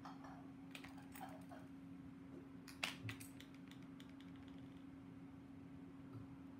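Faint, scattered light clicks and taps of small marbling tools and paint jars being handled on a tabletop, the sharpest about three seconds in, over a steady low hum.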